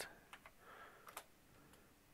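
Near silence, broken by a few faint, short clicks of computer input; the clearest comes about a second in.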